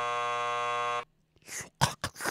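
Electronic game-show buzzer: one steady, low, flat buzz that cuts off suddenly about a second in.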